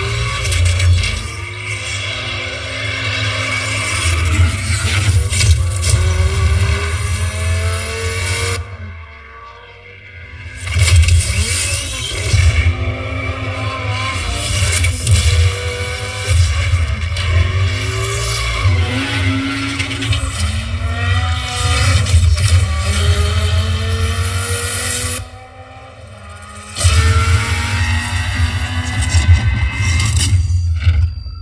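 A car commercial soundtrack played at full volume through an Oxa Yoi Akareddo 601 2.1 speaker system: a car engine revs up in repeated rising glides over heavy bass and music. The sound drops away briefly about nine seconds in and again near twenty-five seconds in.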